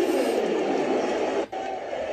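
Arena crowd noise from a basketball TV broadcast: a steady din of many voices, broken by a sudden edit cut about one and a half seconds in, after which the crowd noise carries on.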